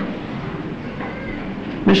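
Steady hiss and low hum of an old lecture recording's background noise during a pause in the talk, with a man's voice coming back in just before the end.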